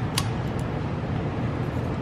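A steady low background hum, with a single sharp metallic click a fraction of a second in as a hand valve-spring compressor tool is handled on an LS cylinder head.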